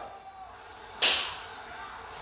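A single sudden swishing burst of noise about a second in, fading away within about half a second, over a low background.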